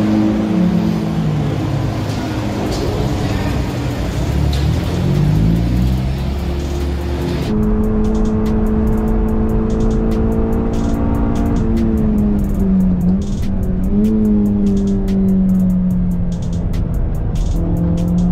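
Honda Civic Si's K20 2.0-litre four-cylinder engine at high revs, its pitch rising and falling for the first several seconds. From about seven seconds in it holds a steady high-pitched note heard from inside the cabin, dipping briefly twice near the middle.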